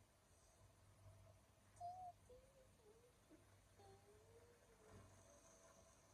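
Near silence: faint background tone, with a few quiet, wavering pitched sounds in the middle.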